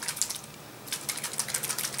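Small plastic spray bottle of alcohol with nail polish dissolving in it, shaken hard by hand: a fast run of light clicks and rattles, with a short lull about half a second in.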